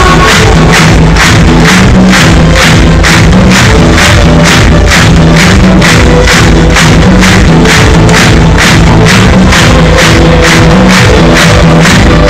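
Live electronic pop band playing loud through the concert PA, with a steady fast beat of about four strokes a second over a sustained bass line.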